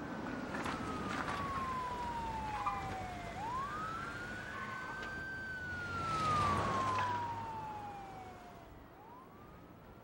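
Emergency vehicle siren wailing, each cycle rising quickly and then sliding slowly down, about every five seconds. A car passes about six seconds in, the loudest moment.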